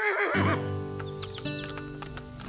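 A horse whinnies with a quavering call that fades about half a second in, then hooves clip-clop over background music with long held notes. These are sound effects for a ride on horseback.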